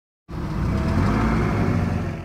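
Sound effect of a van engine running, coming in suddenly about a quarter second in and holding steady.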